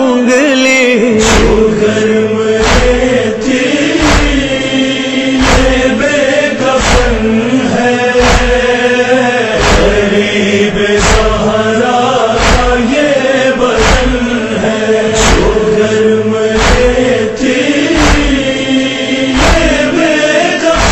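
Noha backing between sung verses: a wordless chorus of voices holds a low, steady chanted drone, with a short thump about every second and a half keeping the beat.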